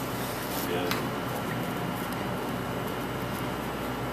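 Steady room hum with faint voices in the background about a second in.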